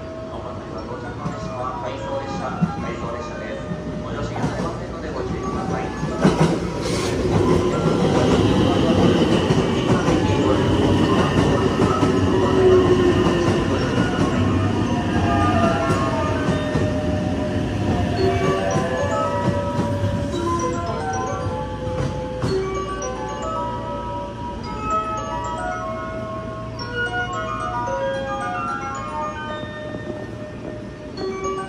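JR West 287 series electric express train running into the station, its wheels clacking over the rail joints several times, then a loud rolling rumble with a high whine that falls in pitch as the train slows to a stop. Short chime-like musical notes follow near the end.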